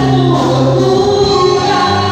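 Live gospel worship music, amplified through a PA in a large hall: a woman sings lead into a microphone over a band of electric and acoustic guitars, drums and keyboard.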